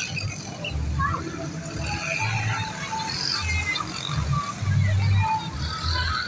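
Rap song: a beat of short, deep bass notes repeating every half second or so, with vocals over it.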